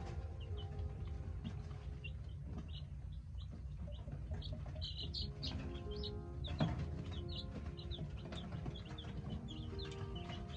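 A brood of baby chicks peeping: many short, high peeps overlapping throughout, over soft background music with long held notes. A single sharp knock comes about two-thirds of the way in.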